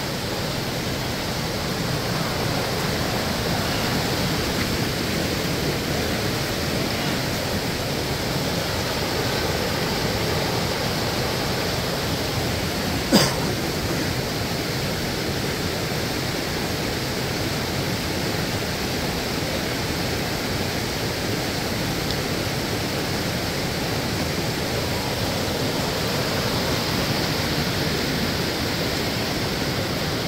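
Waterfall cascading over rock: a steady, even rushing of water. A single sharp click about halfway through.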